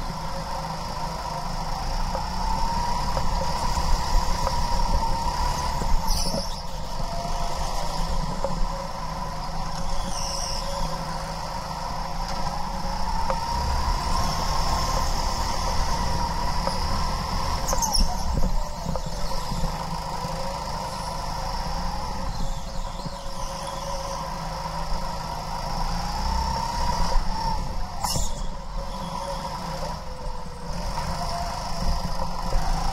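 Go-kart's motor running at speed, heard from on board, its pitch climbing and dropping again every few seconds as the kart accelerates and slows through the corners. A few short sharp knocks come now and then.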